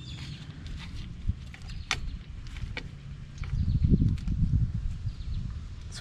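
Light clicks and taps of steel drum-brake hardware as brake shoes and springs are fitted by hand to the backing plate. A low rumble rises about halfway through and lasts a couple of seconds.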